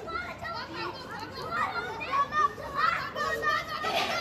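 Several children's voices shouting and calling over one another while playing, getting louder about halfway through.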